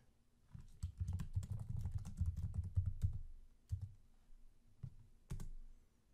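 Typing on a computer keyboard: a quick run of keystrokes for about two and a half seconds, then a few single clicks near the end.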